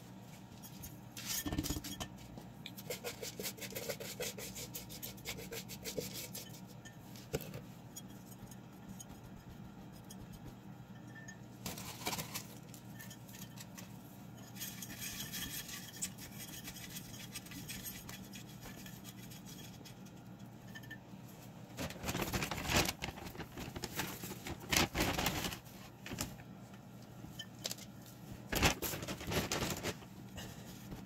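Hands working potting mix with perlite and moss inside a glass jar: irregular rustling and gritty scraping against the glass, in short bursts that come thicker near the end.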